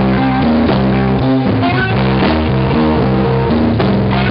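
Live electric blues band playing an instrumental passage. A Gibson ES-335 semi-hollow electric guitar through a Fender Bassman amp carries the melody, with drums behind it.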